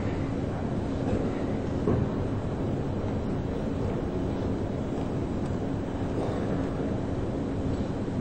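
Steady background noise of an indoor snooker arena with a faint low hum, and no distinct event standing out.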